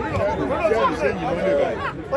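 Several voices talking over one another in a loose, overlapping chatter, like people gathered at the touchline.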